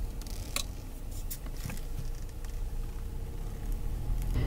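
Low, steady engine and road rumble heard from inside a car's cabin as it drives slowly, with a few light clicks and ticks.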